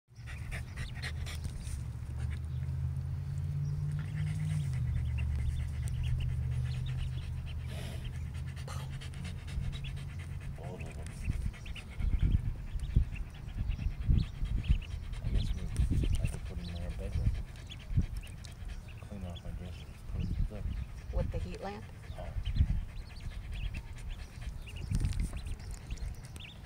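Young ducklings feeding and drinking, with short chirps and clicks. A low steady hum runs under them for the first ten seconds or so and shifts in pitch once about four seconds in, and uneven low thumps and rumbles follow.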